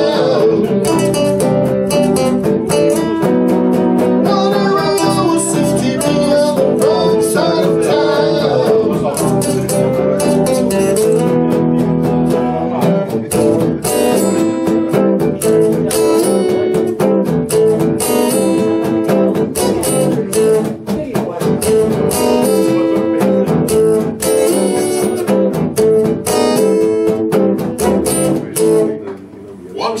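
Electric and acoustic guitar playing a blues-rock song live, with no vocal line, and stopping briefly near the end as the song finishes.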